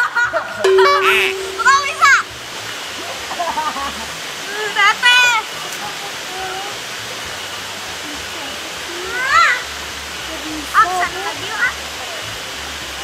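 Steady rush of running water in a natural pool, with splashing as a boy wades through it. A child's high-pitched laughter and squeals break in a few times, loudest near the start and again around the middle and near the end.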